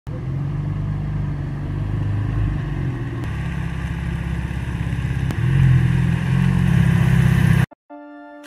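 Car engine running, growing louder as the car comes up the street, then cut off suddenly just before the end.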